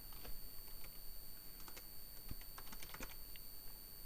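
Computer keyboard being typed on: a short run of faint, irregular key clicks, thickest in the middle, as a single word is entered.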